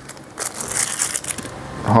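Thin plastic bag crinkling and rustling as a pair of reading glasses is handled and pulled out of it.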